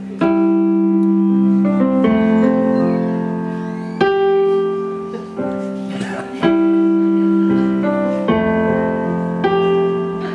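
Piano chords played on a keyboard, a new chord struck about every two seconds and left to ring and fade. These are the slow opening chords of a song.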